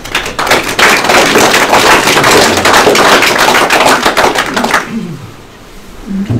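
Audience applauding, a dense patter of many hands clapping that dies away after about five seconds.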